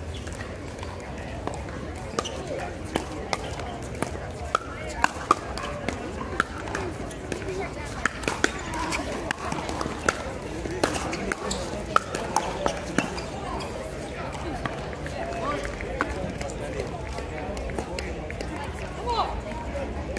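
Pickleball rally: paddles striking a hard plastic pickleball in a quick series of sharp pocks. The hits stop about two-thirds of the way through.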